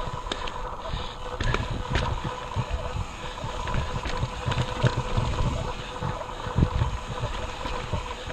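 Mountain bike climbing a rocky trail, heard from a camera on the bike: gusty low rumble of wind buffeting the microphone, with scattered clicks and rattles of the bike over rock.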